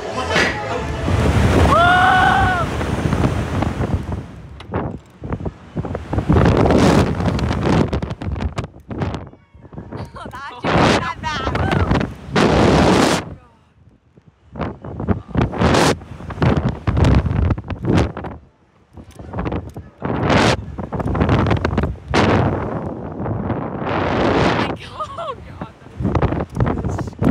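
Wind rushing over the ride's onboard microphone in loud surges that come and go every second or two as the Slingshot capsule is flung up and swings, with a short high scream about two seconds in.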